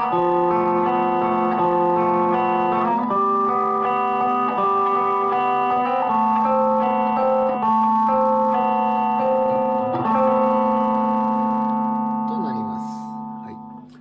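Electric Stratocaster played through a Zoom G2.1Nu multi-effects 'MB Shock' patch, picking arpeggios on the fourth, third and second strings over an F major, G, A minor chord progression. The notes ring on and overlap, with the chords changing every few seconds, and the sound fades away over the last couple of seconds.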